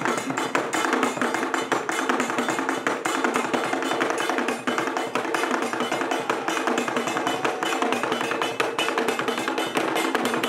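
Live traditional Ghanaian drum ensemble playing a fast, dense, unbroken rhythm of hand-struck drum strokes.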